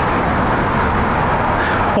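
Steady street traffic noise, an even rushing sound of passing vehicles.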